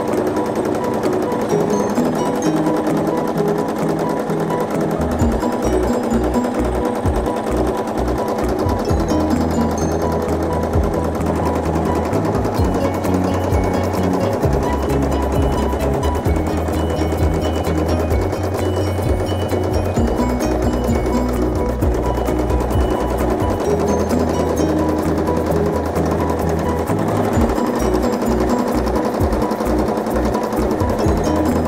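Background music with shifting bass notes, over a domestic sewing machine stitching in free-motion quilting.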